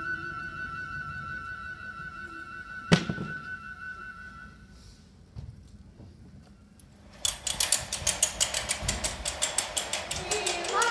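Scene-change music from the show's band, a long held note that stops about five seconds in, with a single loud thunk near three seconds. After a short quieter stretch, a fast, steady tapping beat of about five strokes a second starts about seven seconds in.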